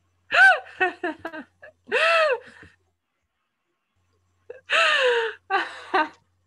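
A woman's high-pitched squeals and gasps of laughter: long arching cries about half a second, two seconds and five seconds in, with short quick bursts of laughter after the first and last.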